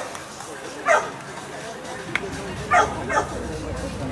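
A dog barking in short, sharp barks: one about a second in and two close together near the end, over background voices.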